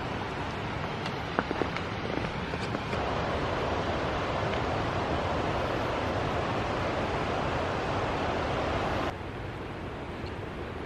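Fast-flowing mountain river rushing over stones, a steady rush that starts about three seconds in and cuts off abruptly near the end. Before it there is a quieter outdoor hiss with a few light clicks.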